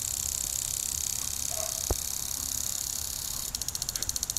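Impact sprinkler on a lawn: a steady high hiss with a single sharp click about two seconds in, then, near the end, the sprinkler head's rapid, even ticking starts, about ten ticks a second.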